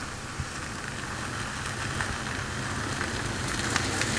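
Overhead high-voltage power line sizzling and crackling steadily, a hiss of corona discharge over a low electrical hum.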